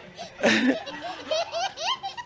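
Laughter: a loud burst about half a second in, then a run of short, rising, high-pitched ha-ha sounds.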